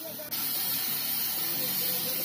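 Steady loud hiss that cuts in suddenly about a third of a second in, over faint voices of people talking.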